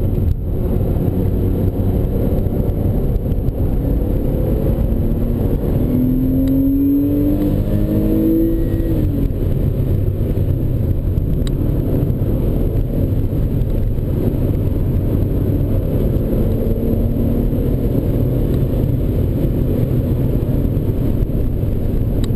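Porsche 911 Carrera S flat-six engine under load, heard from inside the cabin at track speed over steady road and wind noise. The engine note climbs from about six seconds in and falls away near nine seconds, then carries on steadily.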